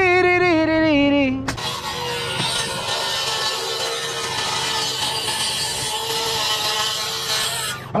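A power saw running with a steady whine that sags in pitch as the blade meets the sheet. About a second and a half in it gives way to a loud, steady cutting noise, which stops abruptly near the end.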